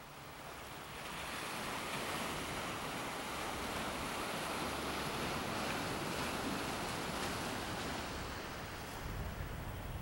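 Ocean surf washing against a rocky shore, a steady rushing that fades in over the first couple of seconds. Some low wind rumble on the microphone near the end.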